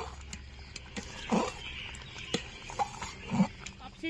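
A metal ladle clicking against and stirring in an aluminium pot of simmering khichuri, over a steady low hum, with two short, louder low sounds, one about a second and a half in and one near the end.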